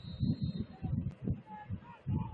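Distant, indistinct shouting and calling from players and spectators across an open lacrosse field, in uneven bursts, with a faint steady high tone in the first second.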